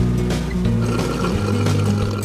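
Background music with a steady beat and a moving bass line.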